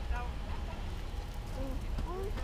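Distant chatter of a waiting race crowd, scattered voices over a steady low rumble.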